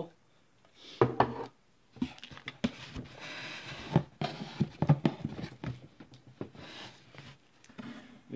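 Canned goods being rummaged out of a cardboard shipping box: rustling and scraping against the cardboard with a string of light knocks and clunks as cans are moved.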